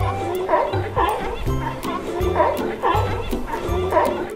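Sea lions barking in a quick run of short calls, about two a second, over children's background music.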